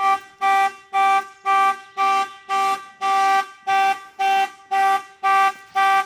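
Chevrolet Corvette's anti-theft alarm sounding the car's horn in regular honks, about two a second. The alarm was set off by the door being opened without the key.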